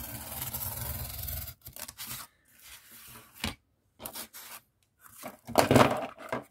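X-Acto craft knife drawn along a steel ruler, slicing through corrugated cardboard in one steady stroke of about a second and a half. Then a few light handling sounds of cardboard, and a louder burst of handling noise near the end.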